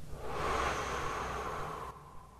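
A man's long, audible breath lasting about two seconds and stopping abruptly near the end.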